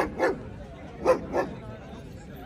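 German shepherd barking: two quick pairs of short barks, the pairs about a second apart.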